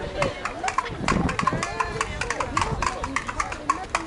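Players and spectators talking and calling out across a softball field, with many sharp clicks several times a second throughout.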